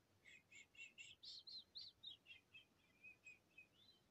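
Faint bird song: a quick run of chirping notes, about four a second, with the later notes slurring down in pitch.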